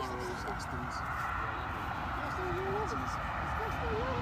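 Indistinct voices of people talking in the background, over a steady distant drone that slowly grows louder.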